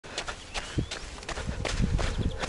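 Footsteps on a dirt and gravel track, several crunching steps a second.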